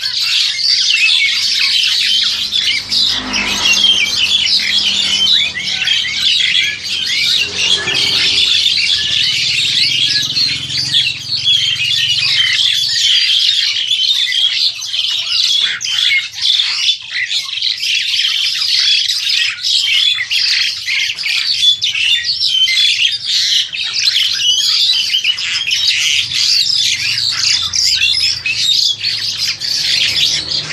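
Caged birds chirping and squawking without a break, many high, short calls overlapping in a dense chatter.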